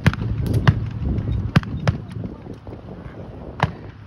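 Scattered single shots of blank gunfire from reenactors' rifles: about half a dozen separate sharp cracks, several in the first two seconds, then a lull and one more near the end.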